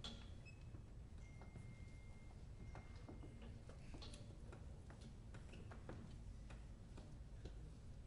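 Near silence: low room hum with faint scattered clicks and taps from musicians handling their instruments on stage, and a faint thin high tone for about two seconds in the first half.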